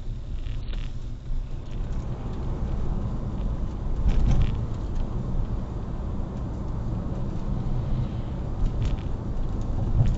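A car driving along a highway, heard from inside the cabin: a steady low road and engine rumble, slightly louder about four seconds in, with a couple of faint light clicks.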